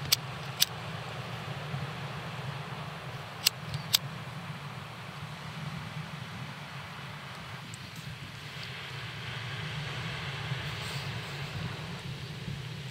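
A lighter being struck: four short sharp clicks, two in the first second and two more about three and a half seconds in. A steady low hum runs underneath, with a faint hiss near the end.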